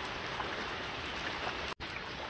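Steady rain falling, with scattered raindrop taps; it breaks off for an instant near the end.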